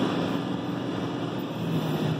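Steady drone of a truck's engine and road noise heard from inside the cab while driving, a low hum under an even rush of noise.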